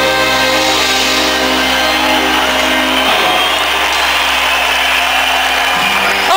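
A live band's last held chord, recorded loud and slightly distorted from the audience, with most of its notes stopping about halfway through. A steady wash of audience noise, cheering and applause, carries on after it.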